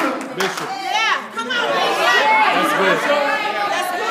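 Congregation calling out overlapping responses during a sermon, many voices at once in a large hall, with one high exclamation about a second in.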